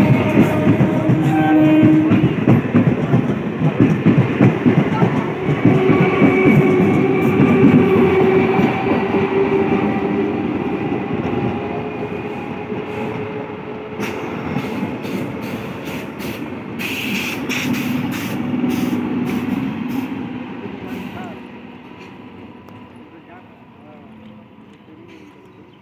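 Electric suburban local train running past and pulling away. Its low rumble and wheel noise are loud at first and then fade steadily, with a run of sharp wheel clicks over the rails partway through.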